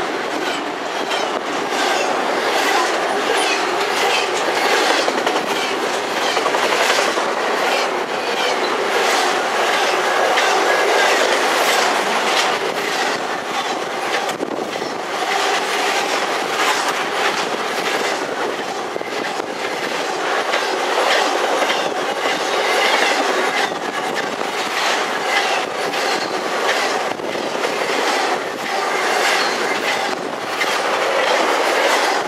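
Intermodal freight train's cars passing close by: a steady rolling noise of steel wheels on rail, broken throughout by the clickety-clack of wheels over rail joints.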